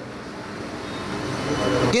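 Road traffic noise, a rushing sound that grows steadily louder over about two seconds.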